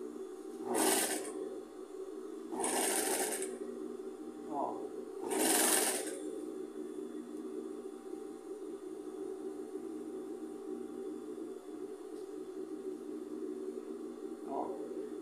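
Industrial sewing machine's motor humming steadily while switched on, with three short bursts of noise in the first six seconds.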